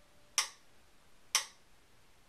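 A clock ticking: two sharp ticks about a second apart.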